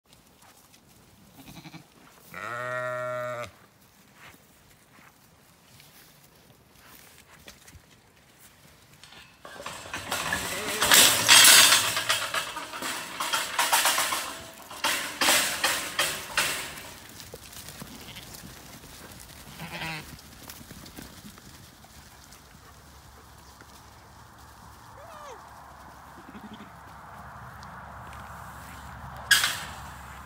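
A Zwartbles sheep bleats once, a single call of about a second early on. Later the flock stampedes past, a loud stretch of trampling hooves and rushing lasting about seven seconds that then fades.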